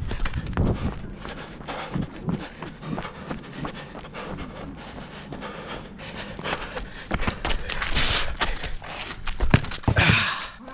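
A footballer panting hard close to the body-worn microphone, over footsteps and scuffs of shoes on a concrete court. A sharp thump near the end is the loudest sound.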